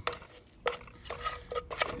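A metal utensil stirring and scraping scrambled eggs in a metal mess tin, with a few separate scrapes and light knocks against the tin's sides.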